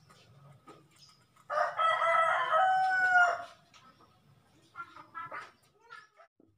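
A rooster crowing once, a single call of about two seconds that drops in pitch as it ends, followed by a few faint short sounds.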